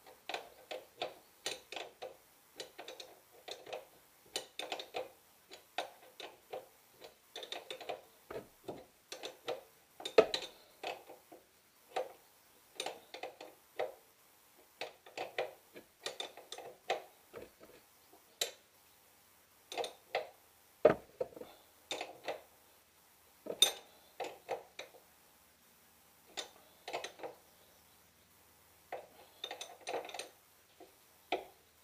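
Small metallic clicks and clinks in short, uneven bursts, with pauses between: hand tools and steel parts being worked on a car's rear hub and suspension knuckle during reassembly.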